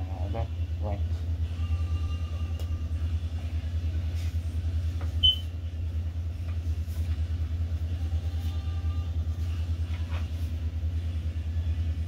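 A steady low rumble, with a few light clicks and one short high chirp about five seconds in.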